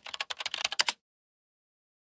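Keyboard typing sound effect: a quick run of clicks that stops about a second in, laid under on-screen text being typed out letter by letter.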